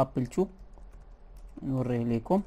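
Typing on a computer keyboard, a run of light keystrokes between short bits of a man's speech at the start and near the end.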